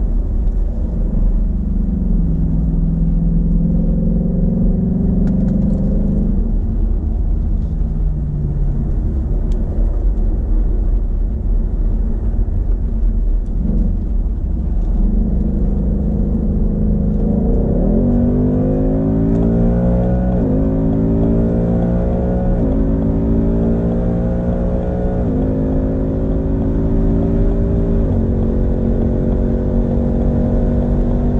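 Ford Mustang engine heard from inside the cabin, running at part throttle at first. A little past halfway it goes to full throttle: the engine note climbs through each gear and drops sharply at each of four upshifts.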